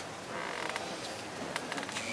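A short creak lasting about half a second, then a quick run of light clicks about a second and a half in, over the murmur of a seated audience.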